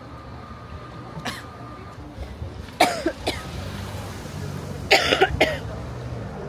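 A person coughing close to the microphone in two short bouts, about three seconds in and again near the end.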